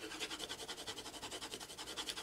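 Soft 12B graphite pencil scribbling back and forth on printer paper, quick even strokes at about six a second, laying down a layer of graphite for transfer.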